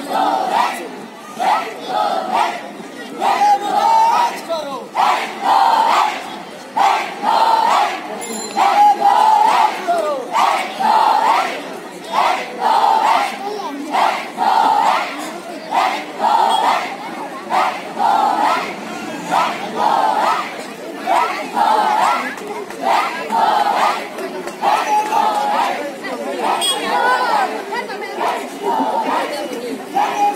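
A large group of voices shouting in unison in a steady rhythm, about three calls every two seconds, like a marching count called in step with the drill.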